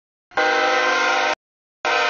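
CSX diesel locomotive's air horn sounding at a grade crossing: one long blast of about a second, then a short blast near the end, part of the long-long-short-long crossing signal.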